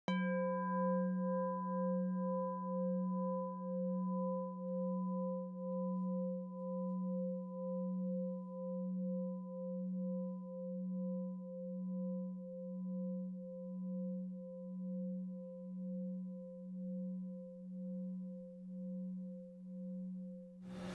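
A Tibetan singing bowl struck once, its deep hum ringing on with a slow, regular wavering about once a second and fading gradually. The higher overtones die away within the first second or two.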